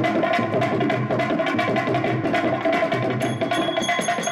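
Live stage-drama band playing fast dance music: rapid, busy drumming over a held melody note, with a few high ringing tones coming in near the end.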